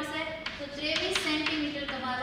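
Chalk tapping and scraping on a blackboard during writing, with several sharp taps in the middle. A woman's voice talks over it.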